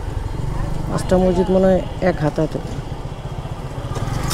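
Motorcycle engine running steadily at low road speed, a low even pulse under passing voices.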